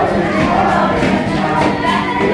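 A group of voices singing a song together in chorus, holding long notes.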